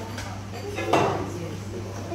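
Indistinct voices of people in the room, with a short, louder voice sound about a second in, over a steady low hum.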